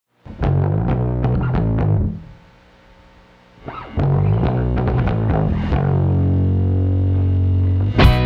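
Rock song intro: distorted electric guitar and bass playing a riff, breaking off for about a second and a half after two seconds, then coming back in and ending on a long held low note.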